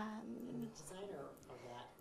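Faint, off-microphone voice speaking quietly, much softer than the presenter's amplified speech.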